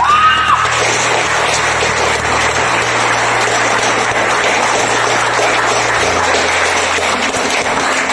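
An audience applauding steadily, a dense patter of many hands clapping, with a brief shout at the very start.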